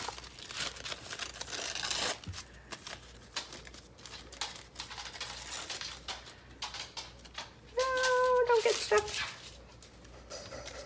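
Thin tissue paper rustling and crinkling as it is handled and torn, busiest in the first two seconds, followed by light scattered taps and clicks. Near the end a short, steady, hum-like tone lasts about a second.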